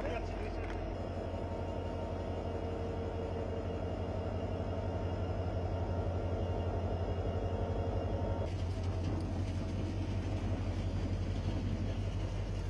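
Diesel locomotive engine running under load as it slowly hauls a train of tank wagons past, a steady low rumble with a fast throb. After about eight seconds a broader rushing noise of the wagons rolling on the rails joins in.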